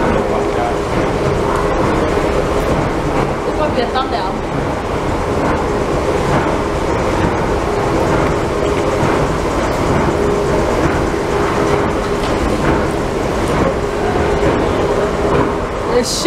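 Escalator running: a steady mechanical rumble with a constant hum.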